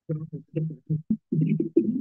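Indistinct, unintelligible speech or murmuring in a low voice, coming in short choppy bursts that cut in abruptly from silence, as a call's noise gate lets them through.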